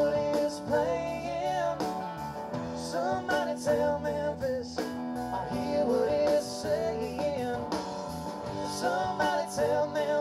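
Live band playing a blues-rock song, with electric guitar and drums in a passage between sung lines. The lead line bends and wavers in pitch.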